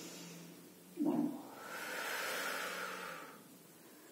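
A woman's long audible exhale lasting about two seconds, a steady hiss of breath, after a short voiced sound about a second in.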